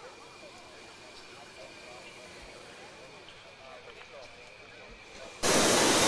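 Murmur of an outdoor crowd of voices at a distance, with a faint steady high whine under it. About five and a half seconds in, a sudden loud burst of hissing noise cuts in and lasts about half a second.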